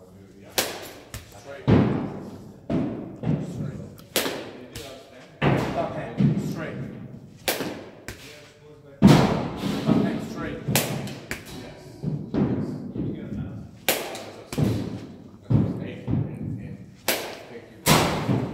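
Wooden bat hitting front-tossed balls in a batting cage, a quick series of sharp hits one to two seconds apart.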